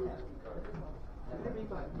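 Indistinct low voices of people close by, over a steady low hum.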